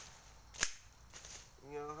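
A single sharp snap about two-thirds of a second in, as a woody stem is cut off a young grafted tree.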